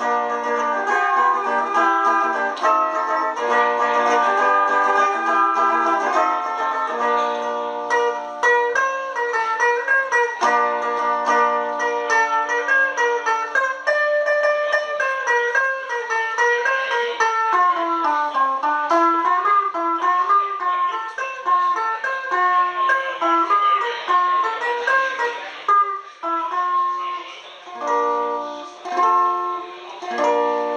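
Instrumental break on a homemade electric plucked-string instrument tuned in quarter-comma meantone. It opens with ringing chords, moves to a quick run of single notes that dips and climbs in pitch, and returns to chords near the end.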